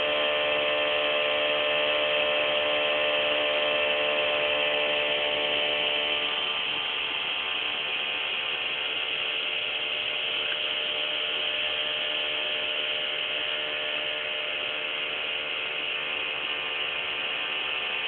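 Bedini SSG pulse motor running steadily while charging a cellphone battery, its magnet rotor and pulsed coil making a continuous buzzing whir with a ratchet-like rattle. It gets a little quieter about six seconds in.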